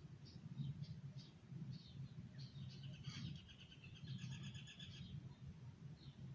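Faint bird chirps, then a rapid trilling bird song for a couple of seconds in the middle, over a low steady background hum.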